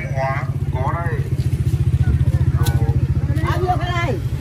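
A motorcycle engine running at low revs close by, a steady low throb that pulses rapidly, with people talking over it.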